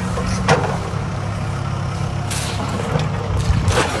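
A cast net thrown out over a pond, landing on the water with a splash near the end, over a steady low hum.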